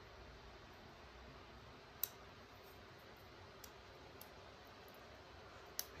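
Near silence with one sharp click about two seconds in and a few fainter ticks later: parts of a small liner-lock folding knife being handled as it is put back together.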